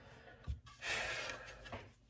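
A man's breathy exhale, like a sigh, lasting about a second, with a soft knock just before it.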